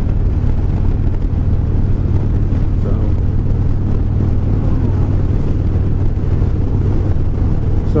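2007 Harley-Davidson Dyna's Twin Cam 96 V-twin running steadily at cruising speed, under a constant rush of wind and road noise.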